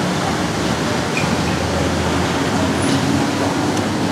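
Steady street traffic noise coming in through the open shopfront, with a low engine hum that swells in the middle.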